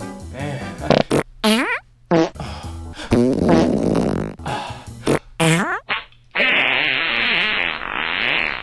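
A series of loud farts over background music: several short ones that slide in pitch, a long rough one about three seconds in, and a longer buzzing one from about six and a half seconds on.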